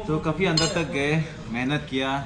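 Metal cutlery clinking against plates during a meal, with people talking over it.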